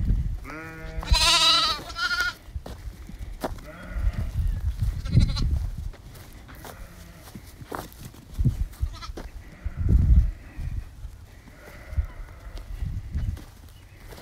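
Sheep bleating: separated lambs and ewes calling to each other. There are two wavering bleats in quick succession near the start, another about five seconds in, and fainter calls later, with low thumps of wind or handling on the microphone.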